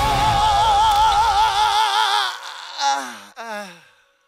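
A high sung note held with wide vibrato over heavy metal music; the band stops about two seconds in and the voice carries on alone, ending in two short falling, wavering notes that fade out.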